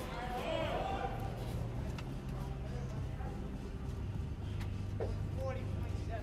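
Room tone of a hall: a steady low hum with faint, indistinct voices in the background and a few light clicks.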